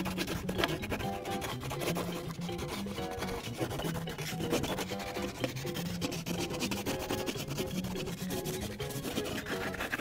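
Crayola wax crayon scratching on a colouring-book page in quick, continuous back-and-forth strokes as an area is filled in, over soft background music.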